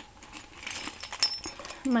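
A bunch of keys on keychains jangling as they are handled: a run of small, irregular metallic clinks.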